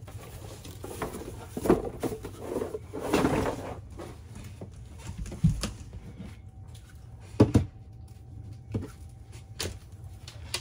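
Plastic Flowbee clipper parts and spacer attachments being handled on a desk: scattered clicks and knocks with a stretch of rustling early on, over a low steady hum.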